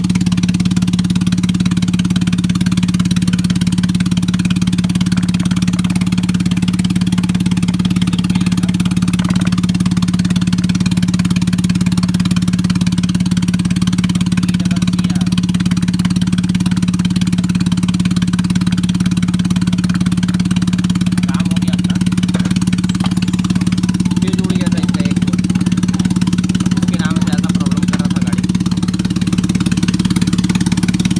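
Datsun Go Plus's 1.2-litre three-cylinder petrol engine idling steadily, running now that its no-start fault has been fixed.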